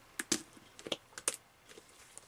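Handling of a gas mask being taken off: a few short, sharp clicks and taps from the straps, buckles and facepiece, clustered in the first second and a half.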